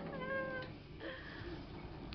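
A single short, high call held on one steady pitch for about half a second near the start, then only faint low room sound.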